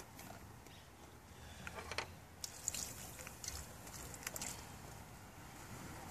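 Faint, scattered rustles and light taps as baking soda is shaken from a cardboard box onto corroded battery terminals.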